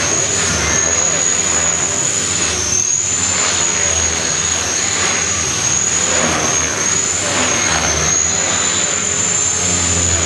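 Align T-Rex 500 electric RC helicopter flying aerobatics: a high-pitched motor and rotor whine over a whirring rotor noise. The pitch dips and recovers several times as the head speed changes through the manoeuvres.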